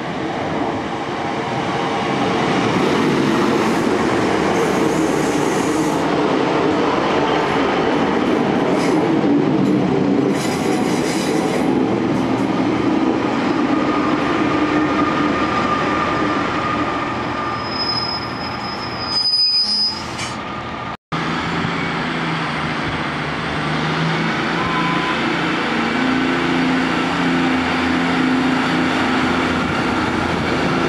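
Class 150 Sprinter diesel multiple unit arriving at a platform, its wheels running on the rails with a brief high squeal as it comes to a halt. After a cut about two-thirds through, the stationary unit's diesel engines idle with a steady low hum.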